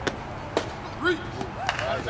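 Sharp knocks of a softball game, one of them a bat hitting a pitched softball, with voices shouting from about halfway through.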